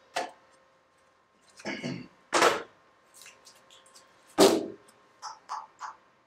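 A rod holder tube being handled against a plywood test board with hole-saw holes: a few short scrapes and knocks, the loudest about four and a half seconds in, then three small clicks near the end.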